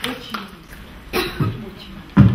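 A person coughs once about a second in, among brief low voice sounds.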